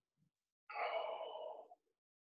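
A man sighing out one long breath, lasting about a second, beginning a little under a second in, while holding a deep kneeling quad stretch.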